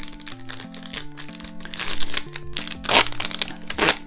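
A trading-card booster pack wrapper being handled and opened, giving a run of sharp crackles, the loudest about two, three and four seconds in.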